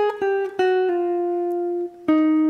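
Clean-toned hollow-body archtop electric guitar playing single picked notes: a short descending run of four notes, the last one held for about a second before it stops. It is part of a bebop-style line over a G altered dominant chord.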